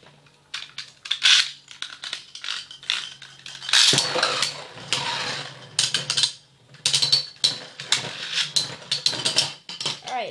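Two Metal Fight Beyblade tops, Thief Phoenix E230GCF and Pirates Orochi 145D, spinning in a plastic stadium. A steady low hum of spinning for about four seconds, then a loud clash, followed by repeated metallic clinks and knocks as the tops collide.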